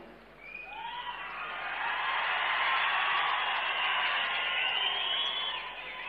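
Large crowd cheering, with many voices shouting together, swelling over the first two seconds and fading away near the end.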